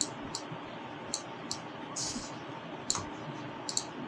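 Scattered sharp clicks of a computer mouse and keyboard, about eight separate clicks at uneven intervals, over a faint steady hiss.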